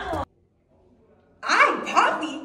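Music with a steady bass cuts off abruptly. After about a second of near silence, a woman lets out a loud, shrill shriek of outrage that tails off over about a second.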